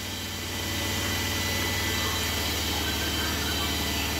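Steady low hum with an even hiss of background machine noise, unchanging throughout.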